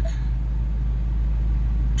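Ford Mustang engine idling, a steady low rumble heard inside the car's cabin.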